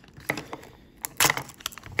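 Plastic wrapper crinkling and crackling as it is peeled off a small plastic toy capsule segment. The crackles come in short bursts, the loudest a little past one second in.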